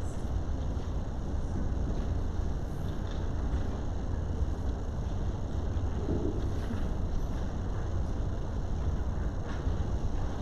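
Steady low rumble of background room noise, with a faint brief sound about six seconds in.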